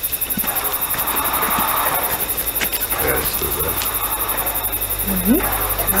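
Sound effect of a tiny steam locomotive puffing, with a short rising voice-like sound about five seconds in.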